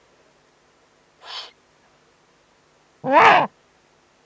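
Eurasian eagle-owls at the nest: a short, fainter hiss about a second in, then a loud, harsh call with a wavering pitch about three seconds in.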